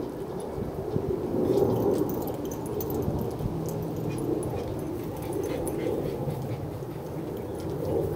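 A small dachshund-type dog making low, continuous vocal sounds while holding a toy in its mouth.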